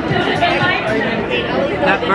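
Chatter of many people talking at once in a busy room.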